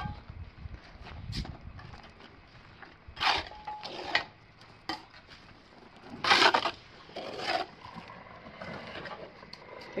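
A trowel scraping and scooping wet concrete in a plastic bucket and working it into place: several short, separate scrapes with quiet between them.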